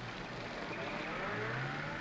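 A car engine running and rising in pitch as it revs, over steady falling rain.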